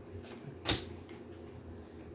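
A single short click about two-thirds of a second in, from tarot cards being handled at the table, over quiet room tone with a low hum.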